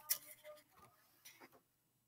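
Near silence with a few faint small clicks in the first half second and a couple more past the middle.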